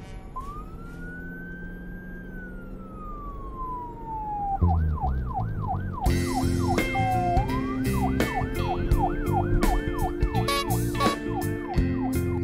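Siren sound effect laid over outro music: a single wailing tone rises and then slowly falls, then about halfway through it switches to a fast up-and-down yelp, about three sweeps a second, as music chords fill in beneath.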